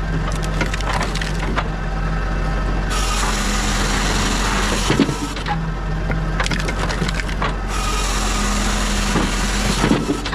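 A Pilkemaster firewood processor splitting log sections. Under a steady machine hum, the wood creaks and crackles as it is forced through the splitting wedge, with a sharp crack about halfway through and another at the end.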